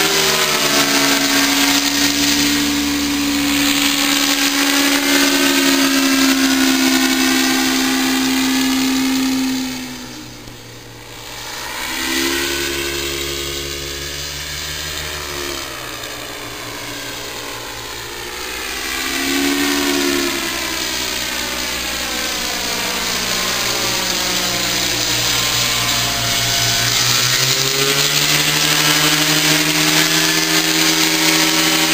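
Paramotor's small backpack engine and caged propeller droning as it flies overhead. The pitch steps up and down with the throttle, and the sound falls away briefly about ten seconds in before swelling back as it passes close again.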